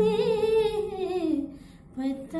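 A woman's voice singing a long wordless note that holds steady, then slides down in pitch and fades out about one and a half seconds in.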